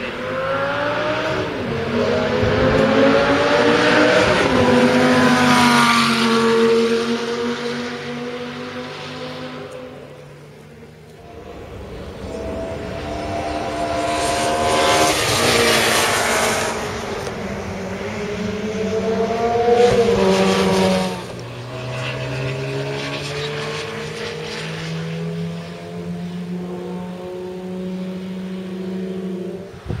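High-performance sports car engines passing at speed on a racetrack. The engine note climbs and drops sharply at each upshift, swells loudest as a car goes by close about halfway through, then drops suddenly to a steadier, quieter engine note farther off.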